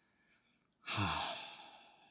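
A man's long, voiced sigh that starts suddenly about a second in, its pitch falling, then trails off.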